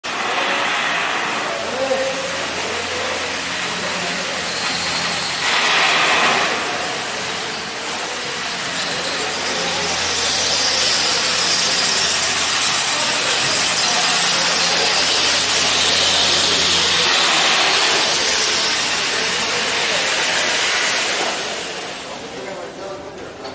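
Loud construction-site noise: a high-pitched squealing hiss over a steady low machine hum, with a louder burst about six seconds in. The noise cuts off abruptly at the very end.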